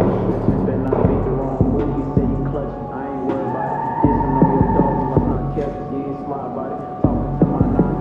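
Street ambience: a deep throbbing bass hum that swells and fades every second or two, with people's voices talking indistinctly over it.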